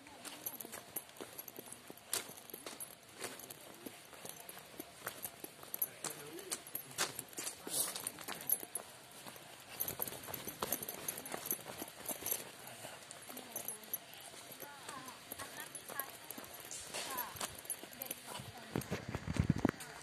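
Footsteps walking along a path of wooden sleepers and gravel: irregular knocks and crunches, a step or two each second. Voices are heard in the background.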